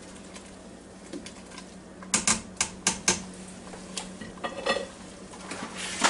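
A stirring spoon knocking and scraping against the inner pot of a Ninja Foodi Deluxe multicooker as boiling soup is stirred. There are a handful of sharp clicks about two seconds in, a few more near five seconds, and a steady low hum underneath.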